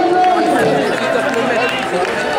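Crowd of spectators talking over one another, a loud, steady murmur of many voices with no single speaker standing out.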